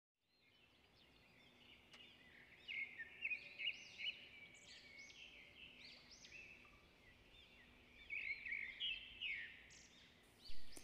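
Birds chirping faintly, a run of short high calls one after another, busiest a few seconds in and again near the end.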